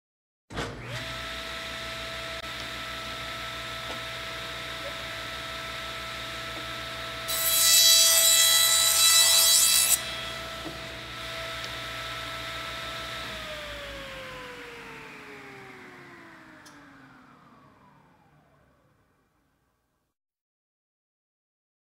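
An electric power saw running with a steady whine, then cutting through wood for about three seconds near the middle, loud and rasping. After that it is switched off and winds down, its pitch falling slowly until it stops.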